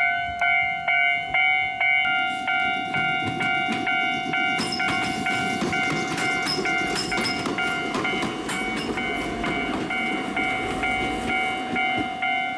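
Japanese level-crossing alarm ringing its repeated electronic clang about twice a second. From about four seconds in, an Iyotetsu 610-series electric train is heard running over the rails with clicking wheels.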